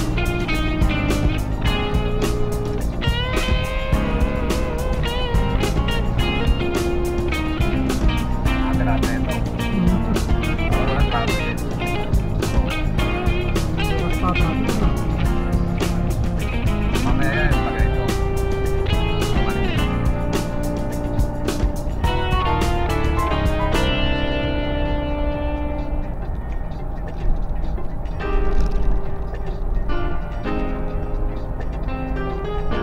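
Background music with a steady beat; about three-quarters of the way through, the percussion and high end drop away, leaving sustained notes.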